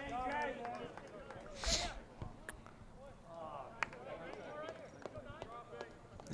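Faint voices of players and spectators calling out across a soccer field, with a few short sharp knocks, the strongest a little under two seconds in.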